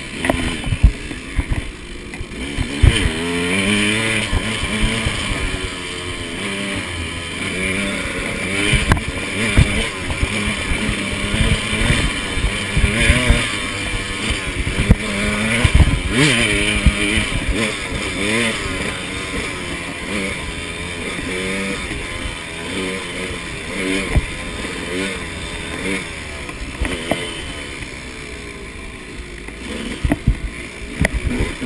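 KTM 200 XC two-stroke dirt bike engine revving up and down under hard riding, its pitch rising and falling constantly. Frequent sharp knocks cut through as the bike bounces over the rough trail.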